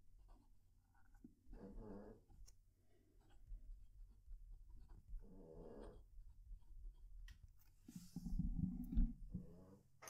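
Fountain pen nib scratching faintly across notebook paper as a sentence is written, with a Cavalier King Charles Spaniel snoring: soft snores about two seconds and five and a half seconds in, and a louder one near the end.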